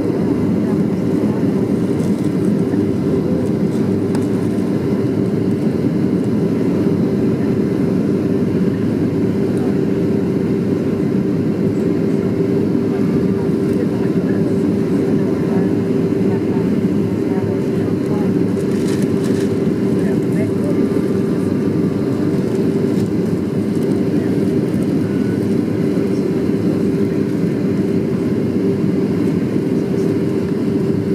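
Cabin noise of a Boeing 737-300 on its landing approach, heard from a window seat beside its CFM56-3 engine: a steady rush of engine and airflow noise with a constant hum, unchanging throughout.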